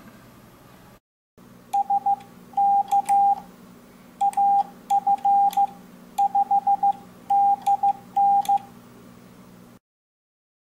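Morse code sidetone beeping from an MFJ-422D electronic keyer, keyed by hand with an iambic paddle. A single steady tone is sent in dits and dahs, and the groups read as the callsign AF5DN. Light clicks of the paddle contacts come with the keying, over a faint steady hum.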